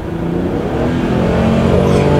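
Toyota Crown Athlete's 1JZ inline-six under full-throttle kickdown, heard from inside the cabin: the torque-converter automatic has dropped a gear and the engine note climbs steadily as the car accelerates.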